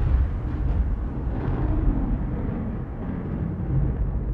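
Deep rumbling boom of an intro sound effect, fading slowly as its tail dies away.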